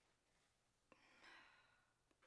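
Near silence: a faint click about a second in, then a faint exhale.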